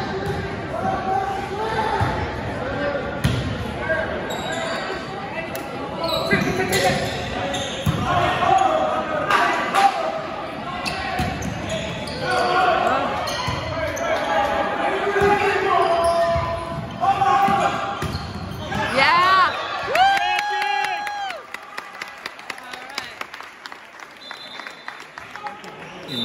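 Volleyball being played in a reverberant gymnasium: sharp ball hits and bounces over steady crowd and player voices. Near the end comes a rising tone that holds steady for about a second, then the hall goes quieter.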